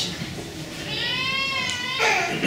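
A single high-pitched, drawn-out animal cry, about a second long, starting about halfway through; its pitch rises slightly and then falls.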